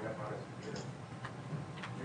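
Quiet talk in a large room, with a couple of light clicks in the second half.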